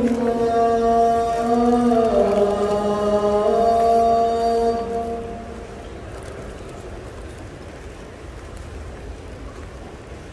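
A voice chanting a long melodic phrase of held notes that step slowly up and down. It ends about five seconds in and gives way to the low, steady murmur of a large crowd in a big hall.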